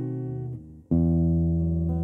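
Acoustic guitar played alone. A chord rings and fades into a brief gap, then a new chord is strummed just under a second in and rings on.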